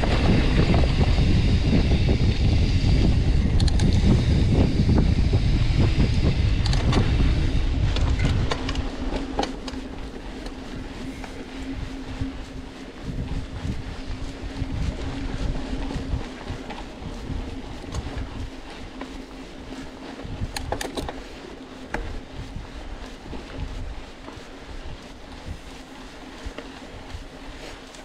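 Mountain bike riding on a dirt trail. Heavy wind rumble on the camera microphone lasts for about the first eight seconds. After that the ride is quieter: tyres roll on the dirt under a steady low hum, with occasional clicks and rattles from the bike.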